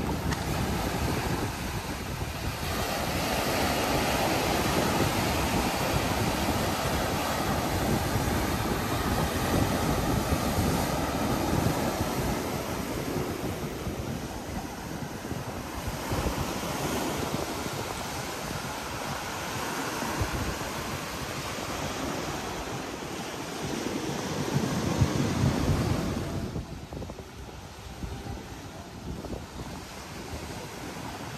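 Ocean surf breaking and washing up the sand in slow swells, with wind rumbling on the microphone. The surf swells loudest near the end, then eases off.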